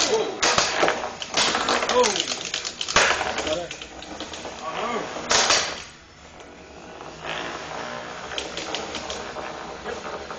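Small antweight combat robots clattering in the arena: bursts of rapid knocks and rattles, busiest through the first few seconds, with another sharp burst a little past halfway and fainter scattered clicks after it.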